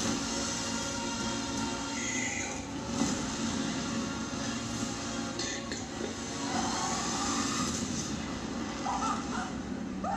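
Movie trailer soundtrack playing: music with a steady low drone underneath.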